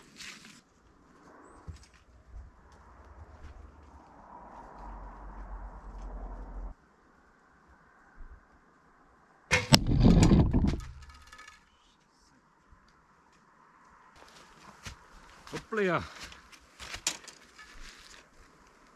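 An arrow strikes the camera's tripod about ten seconds in: a sharp crack, then about a second of loud, low noise as the camera is jolted.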